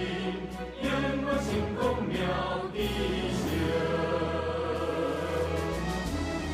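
Choral music: a choir singing over instrumental accompaniment, held at an even level.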